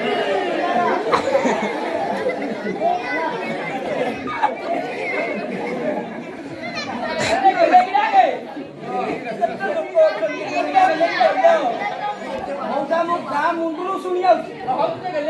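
Many voices talking at once: the chatter of a large crowd, with some voices standing out now and then.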